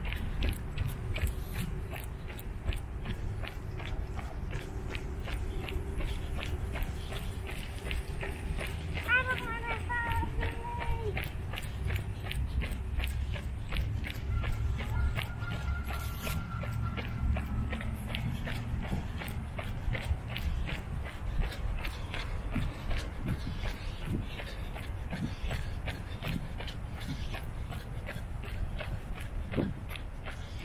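Footsteps of a person walking at an even pace on a concrete path, a steady run of regular steps, with a brief high-pitched voice about nine seconds in.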